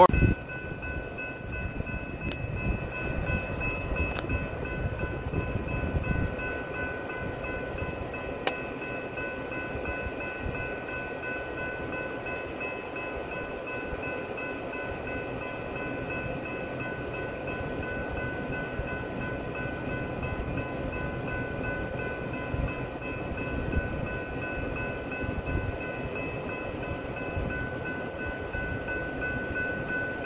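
Idling Union Pacific diesel locomotives of a stopped coal train: a steady low rumble, heavier for the first few seconds, with several steady high-pitched tones held unchanged throughout.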